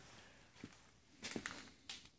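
A few faint footsteps and small knocks on a concrete floor, soft and irregular.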